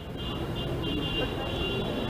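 Outdoor background noise: a steady low rumble like distant traffic, with a faint, high, broken chirping tone above it.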